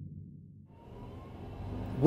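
The low rumble left from a logo-intro boom sound effect dies away over the first half-second. A car's engine and road noise, heard from inside the cabin, then fades in and grows louder.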